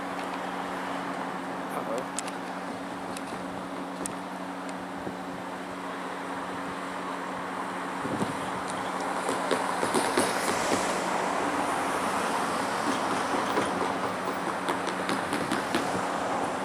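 EMD GP40-2 diesel locomotive pulling a short freight train away. A steady low hum gives way about halfway through to a louder rumble that grows as the engine works harder.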